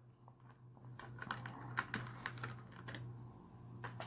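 Faint typing on a computer keyboard: an irregular run of light key clicks that starts about a second in, with one more click near the end, over a steady low hum.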